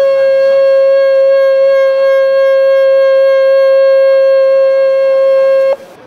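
A single long, loud air-horn blast held at one steady pitch, cutting off abruptly just before the end.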